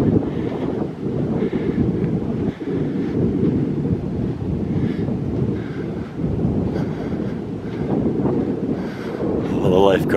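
Wind buffeting the microphone, a steady low rumble that rises and falls in strength.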